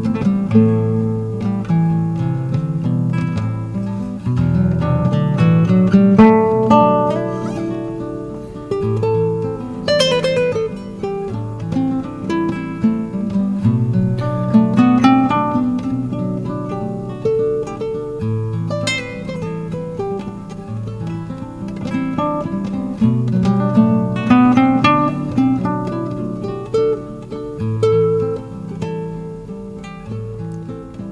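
Classical guitar improvisation, plucked notes over a repeating low bass figure layered with a loop pedal.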